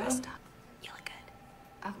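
Faint whispered speech, a short question of television dialogue, then a spoken "okay" near the end.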